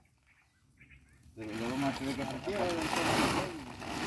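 Chopped silage being pushed into a woven plastic feed sack, a rustling, crunching noise that starts about a second and a half in and is loudest near the end, with quiet men's voices over it.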